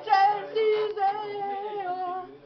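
A young woman singing solo and unaccompanied. A few short notes give way to one long held note about half a second in.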